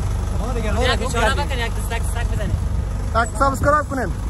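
A bus engine idling with a steady low rumble, while men's voices call out over it.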